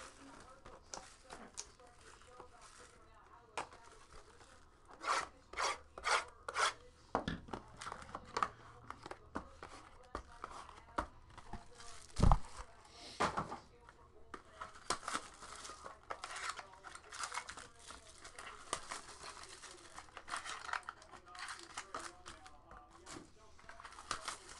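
Cardboard and plastic wrapping of a sealed trading-card box being torn open and crinkled by hand, in short scattered bursts, with a single thump about halfway through.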